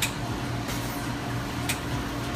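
Slurpee machine running with a steady hum while slush is dispensed from its tap into a cup, with two faint clicks, one at the start and one near the end.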